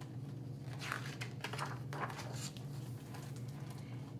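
Paper rustling as a page of a hardcover picture book is turned, a few brief rustles in the middle, over a steady low hum.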